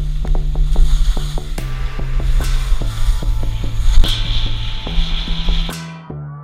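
Background music with a steady beat of about four ticks a second and a changing bass line, over a loud low rumble of wind and skis on the snow picked up by the action camera's microphone; the rumble cuts off suddenly near the end, leaving the music alone.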